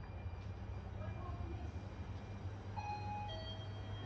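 An electronic two-note chime sounds about three seconds in, a higher note followed by a lower one. Beneath it runs the steady low hum of an indoor mall.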